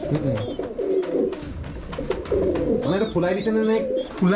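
Domestic pigeons cooing: a run of low, wavering coos, with a man's voice briefly about three seconds in.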